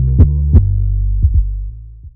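The end of a rap track's beat. Deep sustained bass runs under sharp drum hits about three times a second. The hits stop a little over half a second in; after two last quick hits, the bass fades out and the track ends.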